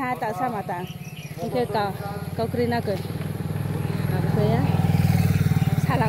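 A vehicle's engine, a low pulsing drone that grows louder from about three seconds in to its loudest near the end as it approaches, under a woman's talking.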